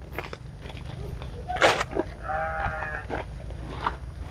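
Handling noise as leafy mustard greens in a woven sack are carried and set down, with a sharp rustle just before halfway. A short bleat from livestock comes about two-thirds of the way through.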